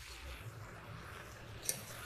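Faint stirring and scraping of a thick rice, sausage and vegetable mixture across the bottom of an enamelled Dutch oven, loosening the browned fond, with one sharp click near the end.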